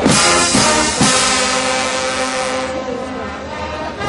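Brass band of trumpets and trombones playing loud, accented chords, with two strong hits about a second apart. The playing softens in the last second or so.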